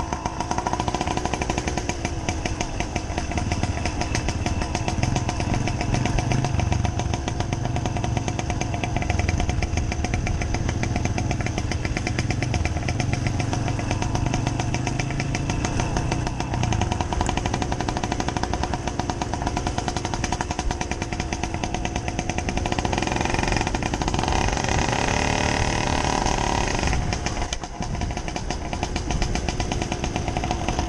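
Small moped engine running steadily as the bike is ridden along a rough dirt track, with a fast, even exhaust chatter; for a few seconds late on, a higher tone rises in pitch, followed by a brief dip in level near the end.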